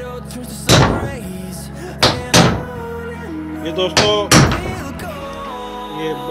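Background song with singing, cut through by several loud knocks: one about a second in, then two close together around two seconds and two more around four seconds.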